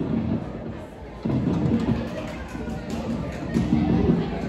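Amplified guitar strummed in three short chords, about a second or two apart, each ringing out briefly: a guitar being tested between songs to check that it is working again.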